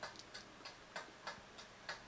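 Faint, irregular clicks, about four a second, over a steady low hum.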